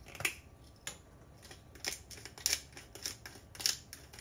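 Salt and pepper grinder being twisted by hand, giving a run of short gritty grinds about every half second to second.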